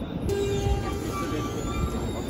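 An E531-series electric train starting to pull out. Its motor drive whines in steady tones that step up in pitch, over a low rumble from the running gear.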